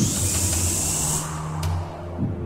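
Dramatic film score: a rising whoosh sweep peaks as a high hiss that fades out about a second in, over a steady low music drone.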